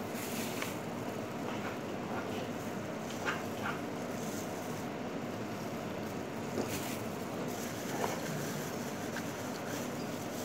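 Close-up eating sounds: biting and chewing food, with a few short crinkles and clicks from the plastic bag wrapped around the food, over a steady background noise.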